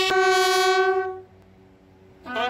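A bugle call sounded as part of police funeral honours: one long held brass note that ends about a second in, followed by a quiet pause before the next phrase.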